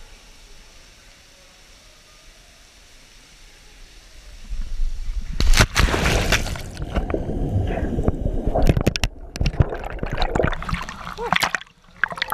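A person plunging into deep cenote water with the camera in hand: a loud splash about five seconds in, then churning and bubbling water around the camera underwater, and splashing as he surfaces near the end.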